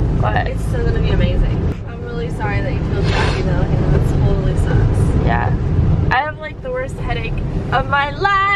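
Steady low road and engine rumble inside a moving car, with voices talking over it. The rumble drops away about six seconds in.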